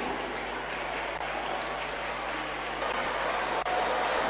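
A large congregation applauding and calling out: a steady, even wash of crowd noise, well below the preacher's voice.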